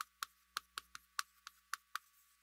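Chalk tapping against a chalkboard as characters are written: a faint run of short, sharp clicks at uneven spacing, about four or five a second.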